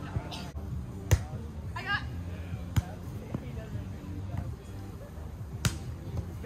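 Volleyball being hit during a rally: three sharp smacks of hands or forearms on the ball, the loudest about a second in, another near three seconds and one near the end, with a short shout from a player between them.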